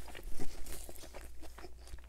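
Close-miked chewing of a mouthful of McDonald's Junior Chicken sandwich, a breaded chicken patty on a soft bun: a run of small moist clicks and crunches.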